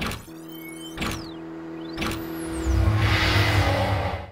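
Logo sting of music and sound effects: three sharp hits about a second apart, with falling whooshes after the first and third, over a held tone. A deep rumble swells near the end.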